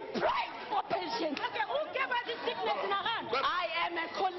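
Overlapping voices: several people talking at once, with no words clear.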